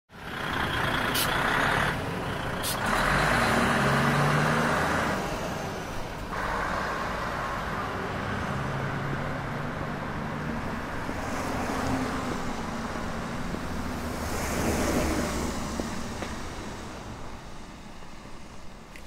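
Road traffic sound: vehicles passing with a low engine hum and a hiss that swells and fades several times.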